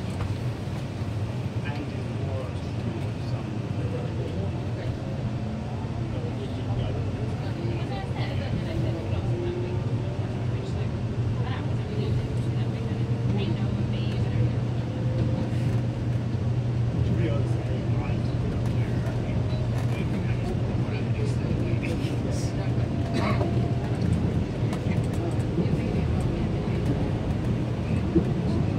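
Electric commuter train with a Toshiba IGBT VVVF traction inverter, heard from inside the car: the traction motors whine in a tone that climbs slowly as the train gathers speed. Under it runs a steady low rumble of the wheels on the rails, with scattered clicks.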